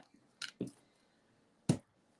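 Two faint clicks about half a second in, then one sharper tap near the end: jewelry being handled and set down on a paper-covered table.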